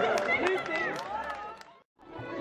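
Crowd chatter, many people talking at once, with a few sharp clicks among the voices. It fades out to silence near the end.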